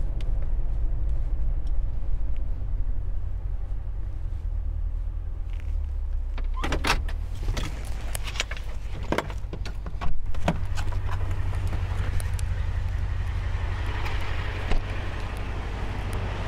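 Steady low rumble of a parked car, picked up by a camera mounted on the outside of its windshield. Over it come a few sharp clicks and knocks from the car as the driver moves about and gets out, the loudest about ten seconds in.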